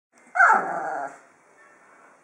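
A Magyar vizsla giving one short call about half a second in, falling in pitch and dying away within about a second.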